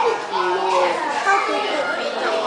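Several women's voices talking over one another in indistinct chatter, with no other sound standing out.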